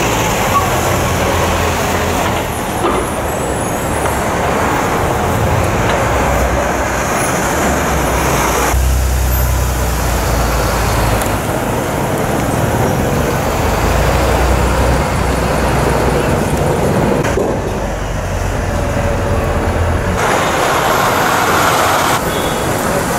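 City street traffic: trucks, a bus and cars running and passing, a steady low engine rumble that swells and fades as heavier vehicles go by.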